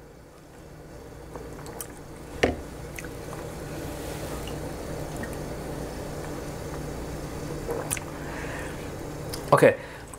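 Mugs of Ovaltine being sipped, with small liquid sounds and a single knock about two and a half seconds in as a ceramic mug is set down on the counter, over a steady low hum.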